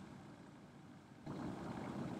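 Near silence, then a little over a second in a faint, steady hiss of recording room tone comes in and holds.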